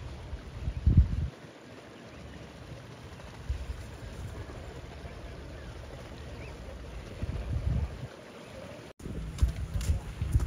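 Wind buffeting the microphone in gusts over steady low outdoor noise, loudest about a second in and again around seven and a half seconds.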